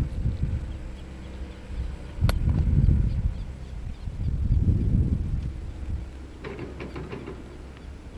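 Wind buffeting the microphone in gusts, with a single sharp click a little over two seconds in.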